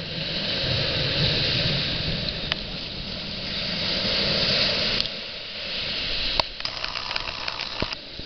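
Ocean surf breaking and washing up the beach, swelling and easing in waves, over a low rumble. A few light clicks near the end.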